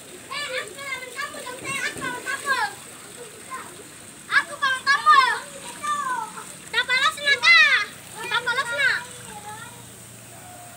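Children's high-pitched voices calling and shouting in short bursts while playing, loudest about seven seconds in.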